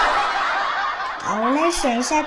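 A person laughing: a breathy snicker, then voiced chuckles that glide up and down in pitch from a little over a second in.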